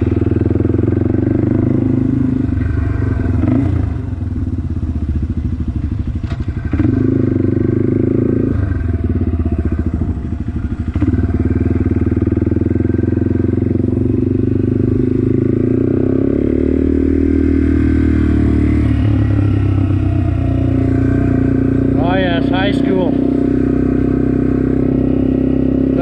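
Yamaha TW200's air-cooled single-cylinder four-stroke engine running under a rider at low speed. The throttle eases off and picks up again a few times, dipping about four seconds in and again around ten seconds before coming back on.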